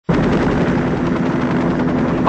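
Helicopter in flight, its engine and rotors running as a steady drone with a fast beat. The sound cuts in abruptly right at the start.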